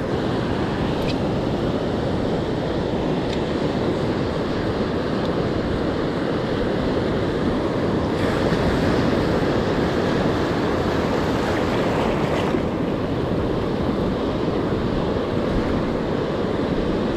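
Ocean surf washing steadily around a wading angler, with wind on the microphone. A wash of surf grows brighter and louder for about four seconds past the middle.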